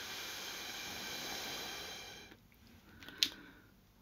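Breath blown through a plastic drinking straw onto wet acrylic paint to spread it into poppy petals: a steady airy hiss that fades out a little over two seconds in, followed by a single short click.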